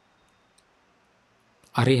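A pause in a man's speech: near silence with two faint, tiny clicks, then his voice starts again near the end.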